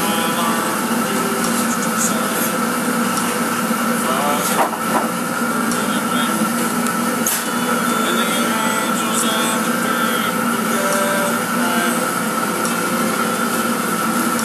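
Automatic greenhouse tray seeder running steadily, its motor and conveyor making an even hum with constant tones. A single sharp knock comes about four and a half seconds in.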